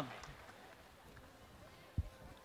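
Faint concert-hall room noise as a spoken word trails off, then a single short, low thump near the end.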